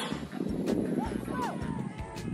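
Shouting voices of players calling across a soccer pitch, short rising-and-falling calls, with a few sharp knocks in between.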